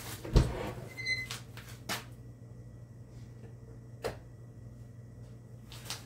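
Knocks and bumps of someone searching through cupboards: a thud about half a second in and lighter knocks near two and four seconds in, with a brief squeak about a second in, over a steady low hum.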